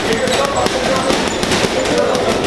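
Boxing gloves landing a rapid run of punches on a heavy punching bag, a quick string of thuds, with voices in the background.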